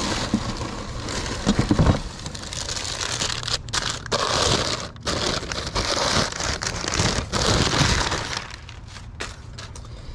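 Crumpled packing paper crackling and rustling as an item is unwrapped from it, with a few louder knocks about one and a half seconds in; the crackling dies down near the end.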